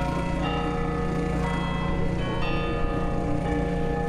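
Bells ringing: several tones struck a few at a time, each left to ring on, over a steady low rumble.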